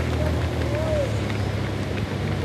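Steady low vehicle engine hum with a rush of outdoor noise, the open-air sound of a road race under a TV broadcast.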